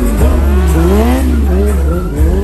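Sport motorcycle engine revving, its pitch falling and rising several times, with tyre squeal as the bike is stunted, over a steady deep bass.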